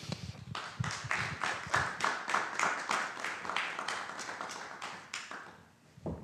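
A small audience clapping, with the individual claps distinct, dying away near the end.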